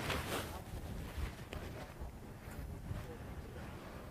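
Wind rumbling and buffeting on the microphone, with a short burst of hiss right at the start.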